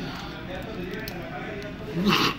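Restaurant dining-room background: a steady low murmur with faint voices talking in the distance, and no distinct sound standing out.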